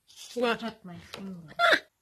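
A woman's voice speaking, ending in a short, loud, high exclamation that falls in pitch, then cut off suddenly.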